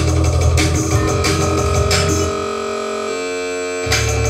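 Electronic music mixed live on a DJ setup: a heavy bass-driven beat that drops out a little over two seconds in, leaving a held synth chord, before the beat comes back at the very end.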